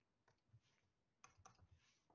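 Near silence, broken by a few faint clicks of a stylus tapping on a drawing tablet, most of them in the second half.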